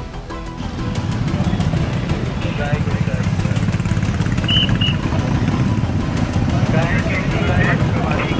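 Many motorcycle engines idling together in a crowded queue, a dense low rumble, with people's voices over it. Two short high-pitched beeps sound about four and a half seconds in.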